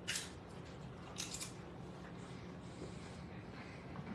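Tortilla chip crunching as it is bitten and chewed: a short crunch at the start, then a couple more about a second in, over a faint steady low hum.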